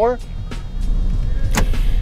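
Car running, heard inside the cabin as a steady low rumble, with a short sharp sound near the end.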